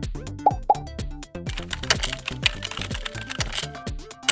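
Background electronic music with a steady beat. About half a second in come two quick rising pops, then a rapid clatter of keyboard typing that lasts about two seconds, as sound effects for an animated search bar.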